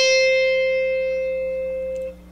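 A single electric guitar note, the high E string at the 8th fret (a C), picked just before and left ringing at a steady pitch, slowly fading.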